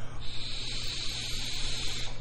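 Steady hiss of a vape being hit as it is inhaled from: the coil firing and air drawn through the tank, lasting nearly two seconds.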